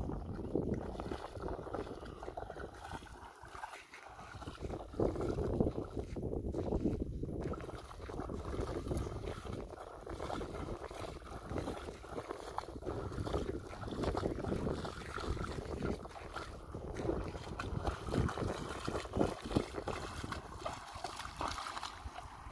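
Water splashing unevenly around the legs of a German Shepherd wading through shallow water, over wind noise on the microphone.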